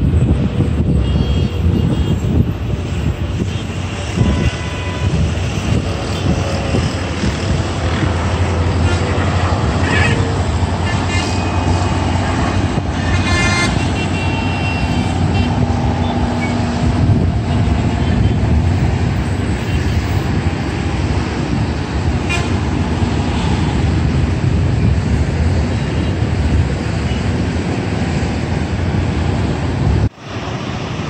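Jet airliner engines running as the plane comes in to land: a loud, steady low rumble with a faint whine that slowly falls in pitch over the first ten seconds.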